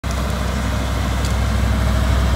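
Tanker water truck's engine running steadily with a low drone while it sprays water across a dirt race track, a steady hiss over it.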